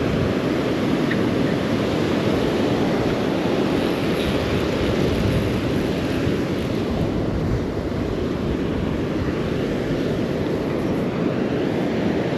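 Steady rumble of wind buffeting the microphone over the wash of breaking surf, with no break or change throughout.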